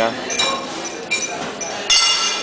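Crockery, glassware and cutlery clinking at a breakfast buffet: a few sharp, ringing clinks, the loudest near the end.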